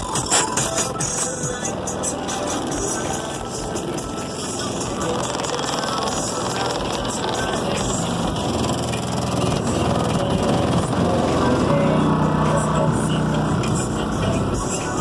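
Music played loud through a truck's aftermarket car-audio system with subwoofers, heard from just outside the vehicle. A strong low bass note swells near the end.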